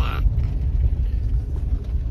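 Steady low rumble of a car heard from inside its cabin. A child's voice trails off at the very start.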